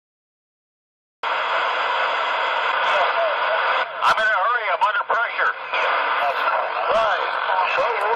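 Cobra 29 LTD Classic CB radio receiving: a steady hiss of static from its speaker starts about a second in, with garbled, warbling voice sounds coming through the noise about three seconds in.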